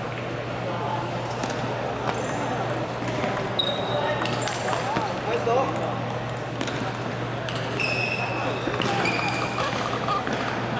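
Table tennis balls clicking off tables and bats, from this and neighbouring tables in a busy hall, over a background murmur of voices and a steady low hum.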